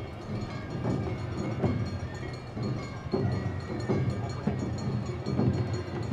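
Awa Odori hayashi band playing: taiko drums beating a steady two-beat marching rhythm, a heavy stroke about every three-quarters of a second, with steady higher ringing tones over the drums.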